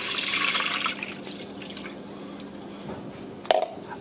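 Whole milk pouring from a plastic measuring jug into a stainless steel saucepan, loudest in the first second and then quieter and steady. A light knock comes near the end.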